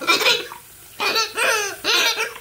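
Rubber chicken squeezed with its head under a running tap, giving two squawks that sound funny, wavering up and down in pitch as water gets into it.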